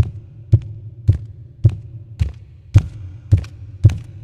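Sampled barefoot footsteps on cement from a Foley library, eight steps in an even walking rhythm of about two a second. Each step is a dull low thump with a lot of low-frequency weight and only a slight click on top.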